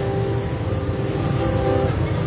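Held background music chords over a steady low rumble of street traffic engines.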